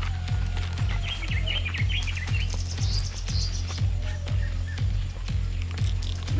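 Background music with a steady bass beat, with birds chirping over it in the first half.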